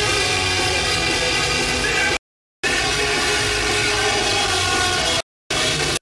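Heavy metal band playing loud live, a dense wall of held, distorted tones. The sound cuts off abruptly to complete silence twice, about two seconds in and again about five seconds in.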